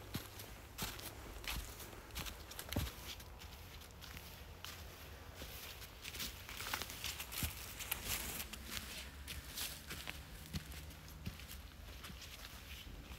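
Footsteps of a hiker walking through dry fallen leaves on a trail: an irregular run of soft crackling, rustling steps.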